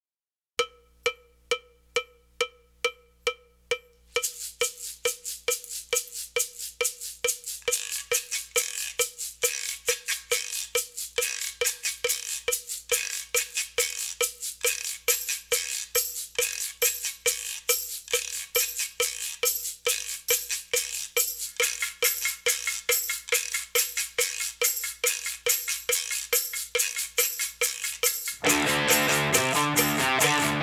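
Percussion-only opening of a rock track. A single struck, pitched knock repeats a little over twice a second. About four seconds in, faster, brighter strokes join it and keep a steady beat.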